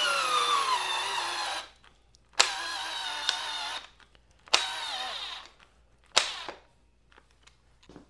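Blue Ridge 12V cordless drill driving a six-inch TimberLOK screw into wood. The motor whine sinks steadily in pitch as it slows under the load and stops after about a second and a half. It then runs in three shorter bursts, the last one very brief, each dropping in pitch as the drill bogs down.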